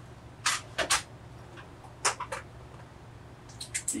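A few short scrapes and clicks of tools being handled on a workbench, over a low steady hum.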